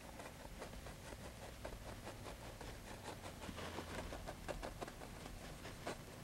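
Faint, irregular soft taps and scrapes, several a second, of a small paintbrush being pushed and dabbed against a stretched canvas wet with oil paint.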